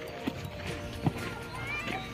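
Footfalls of an athlete doing single-leg hops on a dirt ground: two sharp landing thuds, about a quarter second in and about a second in.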